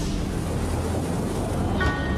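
Steady rushing noise with a low rumble from a sportfishing boat's engine and wind on the microphone, recorded on deck. A few faint steady tones come in near the end.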